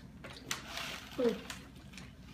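Brown paper bag rustling as it is pulled open, with a crackle starting about half a second in that lasts about half a second. A short hum from a person, falling in pitch, follows just after.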